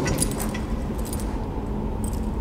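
Light metallic jingling: a click, then small metal pieces clinking in the first half second and again about a second in, over a steady low hum.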